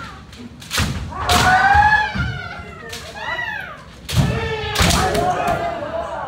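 Kendo sparring by several pairs at once: sharp cracks of bamboo shinai striking armour and stamping feet on a wooden floor, with long drawn-out kiai shouts, in a reverberant hall. The strikes and shouts come in two bursts, about a second in and about four seconds in.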